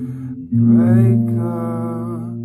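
Fender Stratocaster electric guitar chords ringing, with a new chord struck about half a second in, under a man's wordless sung notes.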